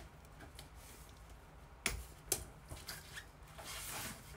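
Light handling noise: scattered sharp clicks and taps, the two loudest close together about two seconds in, over a low steady hum.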